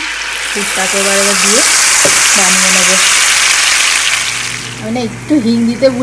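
Ground green pea paste poured into hot oil in a frying pan, setting off a loud sizzle that swells over the first second or so and dies down after about four seconds.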